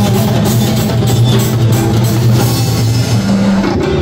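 Live band music without vocals: a drum kit keeping a steady beat over held low notes.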